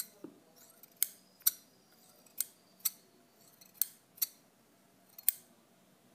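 Solingen steel scissors worked open and shut in the air, the blades giving sharp metallic snips. The snips come in pairs, about four pairs roughly a second and a half apart.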